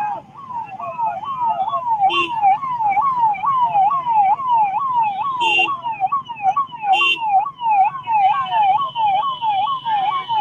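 Police vehicle siren sounding a fast yelp, its pitch sweeping up and down about three times a second without a break. Three short blasts cut in over it, and a steady higher tone joins near the end.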